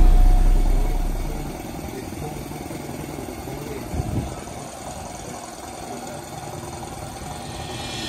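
Background music fades out over the first second or so. It leaves an engine idling steadily, a low even rumble, with a short louder sound about four seconds in.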